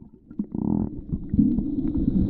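Muffled low rumble of water moving around a waterproof camera just dipped below the sea surface, heard through its housing. A short rushing burst about half a second in, then a steadier low rumble building in the second half.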